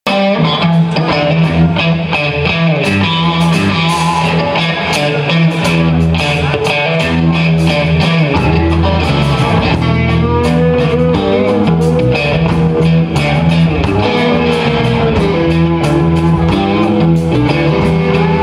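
Live blues-rock band playing an instrumental passage: two electric guitars over bass guitar and drums, with a steady beat.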